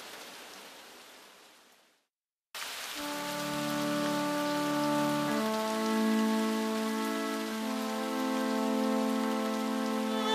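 Steady rain falling, fading out over about two seconds to a short silence. The rain then comes back with sustained backing-track chords entering under it and changing twice.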